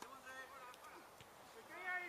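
Football players shouting short, high calls on the pitch, near the start and again near the end, with two faint knocks in the middle.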